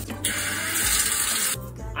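Handheld shower head spraying water onto a tiled shower floor for about a second and a half, then cutting off abruptly, with background music underneath.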